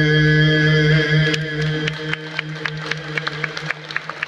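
A male singer holds the long final note of the song. About a second in, scattered hand claps start and build into applause as the note fades near the end.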